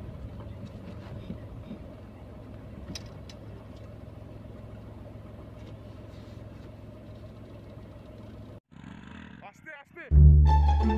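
Tata Tigor car idling at a standstill, a steady low hum heard inside the cabin, with a few light clicks. Near the end it cuts off suddenly.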